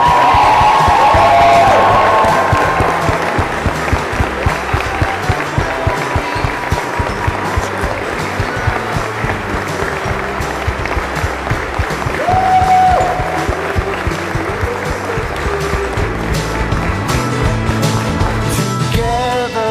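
Music with a steady beat over a crowd's applause and cheering, with voices calling out near the start and again about two-thirds of the way through.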